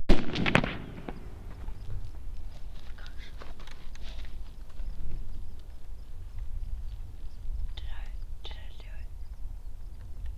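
A single rifle shot right at the start, with a ringing echo trailing off over about a second, fired at a pronghorn buck. Low, faint voices follow later.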